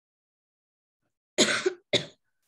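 A person coughing twice near the end, a longer cough followed by a short one.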